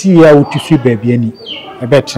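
A man talking, with a bird calling in the background: a short, high, falling call about one and a half seconds in.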